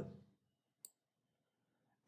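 Near silence with a single faint click a little under a second in.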